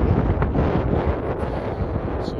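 Wind buffeting the microphone with a loud, irregular low rumble.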